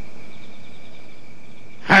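Night ambience of crickets chirping: a steady high trilling with a faint pulsing chirp above it, over soft background noise. A man's voice starts speaking near the end.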